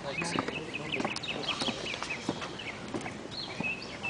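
Small birds chirping repeatedly in short, quick high notes over a low murmur of people's voices.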